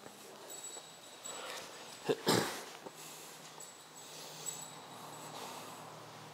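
A small curly-coated dog breathing and sniffing through its nose, with one short, loud burst of breath about two seconds in.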